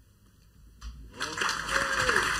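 Audience applause breaking out after about a second and quickly growing loud, with a few cheers in it.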